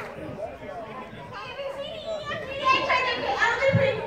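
Crowd of adults and children talking over one another, with several higher children's voices among the chatter.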